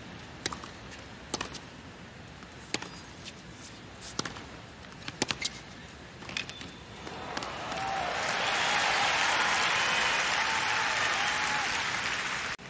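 Tennis ball struck back and forth with rackets in a rally, sharp pops about once every second or so. After the point ends about seven seconds in, the stadium crowd applauds and cheers for around five seconds.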